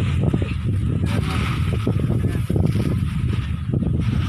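Rustling and scraping of dried rice grain and sacks being handled as the grain is bagged, over a steady low rumble.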